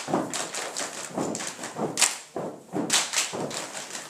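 A group of girls stomping and clapping together in a step routine, without music: a syncopated run of thuds and sharp slaps, a few each second.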